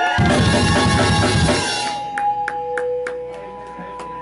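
A live band of electric guitar, upright bass and drum kit hits a final chord that rings out and fades over about two seconds. A few separate drum hits follow, with a steady held tone from the guitar amp underneath.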